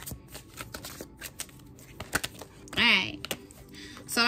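A deck of oracle cards being shuffled by hand: a quick, uneven run of sharp card clicks and flicks. A short voiced sound breaks in about three seconds in.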